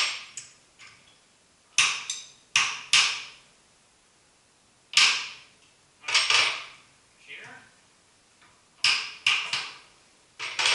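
Sharp metal-on-metal clanks with a short ring, coming in clusters of two or three every couple of seconds, as metal parts and tools are handled and knocked together on a milling machine's table.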